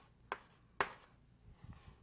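Chalk tapping on a blackboard as symbols are written: two sharp taps about half a second apart, then a few fainter light knocks near the end.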